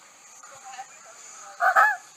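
A peacock (male Indian peafowl) gives one short, loud call of two quick notes near the end.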